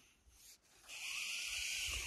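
Bear-bag cord sliding over a tree branch as the food bag is lowered: a steady rubbing hiss that starts about a second in.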